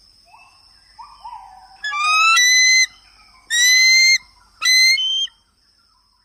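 A bird calling: three loud, whistled calls, each rising in pitch and lasting about a second, after a few fainter calls, over a steady high insect drone that stops near the end.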